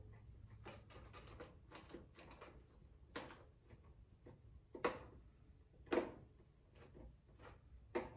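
Faint, scattered clicks and knocks of hard plastic as a battery cover is fitted onto a plastic helmet part and its Phillips screw is tightened with a screwdriver. The loudest knocks come about three, five and six seconds in.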